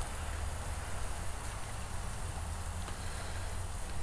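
Chuck roasts sizzling on the grate of a gas sear box searing at about six to seven hundred degrees: a steady crackling hiss over a constant low rush.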